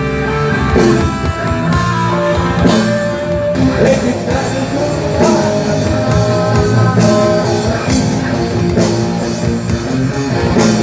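Rock band playing live on stage: distorted electric guitars, bass guitar and drum kit, loud and continuous.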